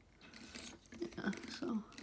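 Faint plastic clicks and rattles from a plastic Transformers action figure being handled, starting about half a second in.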